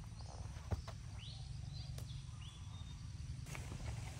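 Outdoor ambience: a steady low wind rumble on the microphone, one sharp snap just under a second in, and a few short high chirps from a bird, some rising, around the middle.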